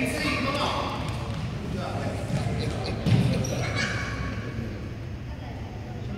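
Indistinct voices of spectators and players echoing in a gymnasium, with a single loud thump of a basketball bouncing on the hardwood court about three seconds in.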